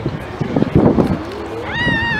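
People's voices close by, with a high-pitched, drawn-out vocal sound starting near the end.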